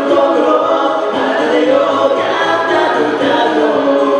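Two men singing a duet into handheld microphones, amplified through PA speakers over a karaoke backing track.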